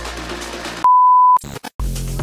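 Background music breaks off a little under a second in for a loud, half-second beep of one steady high tone, an editing sound effect; after a brief gap a different electronic dance track with a steady kick-drum beat starts near the end.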